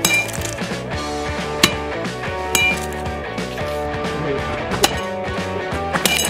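A metal baseball bat striking a smashed Sony compact digital camera on the ground: four sharp clinks, some with a brief high ring, about one to two seconds apart.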